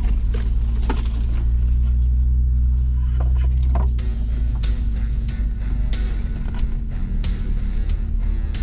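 The 3.0 L V6 EcoDiesel of a Jeep Gladiator runs at low trail speed with a steady low drone. About halfway through, background music with a steady beat and guitar comes in over it.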